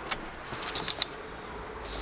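Faint handling noise from a handheld camera being moved inside a parked car's cabin: a few light clicks and rustles, with a low rumble building near the end.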